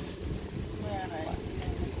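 Wind buffeting the microphone as a steady low rumble, with a faint voice murmuring briefly about a second in.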